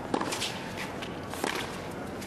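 Tennis ball struck by rackets during a baseline rally: two sharp hits just over a second apart. Faint crowd noise from the arena sits behind them.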